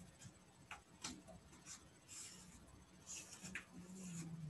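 Near silence, with a few faint, scattered clicks and soft rustles.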